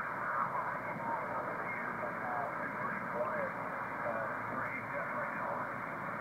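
HF single-sideband radio receive audio played through the Heil Parametric Receive Audio System equalizer: steady band static with a weak voice from a distant amateur station faintly heard underneath. The sound is cut off sharply at top and bottom by the receiver's narrow voice filter.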